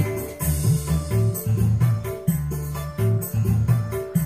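Music with a heavy bass line and a steady beat, played from a flash drive through a TOA ZA2120 PA amplifier into a speaker. It sounds clear, no longer hoarse: the amplifier has new final transistors and its bias has been set to about 0.52 V.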